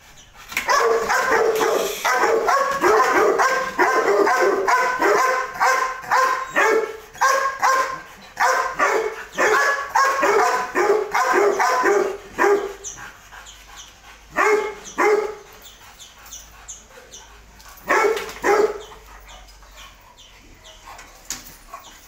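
A dog barking in a rapid, steady run for about twelve seconds, then only a few scattered barks.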